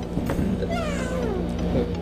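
A cat meowing once, a long call falling in pitch, over steady background music.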